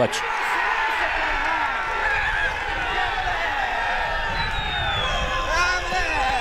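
Crowd of spectators shouting and cheering just after a goal, many voices overlapping at a steady level.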